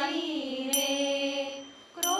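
Women's group singing a Marathi abhang in unison, holding a long note over a harmonium. About a second in, a pair of small brass hand cymbals (taal) is struck once and rings on. The singing fades out just before the end.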